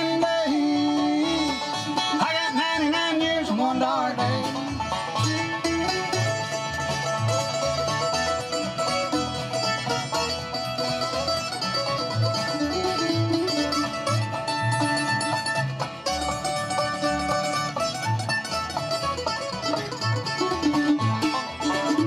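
Live bluegrass band playing an instrumental break with no singing: banjo, acoustic guitars, mandolin and fiddle over a steady plucked upright-bass beat.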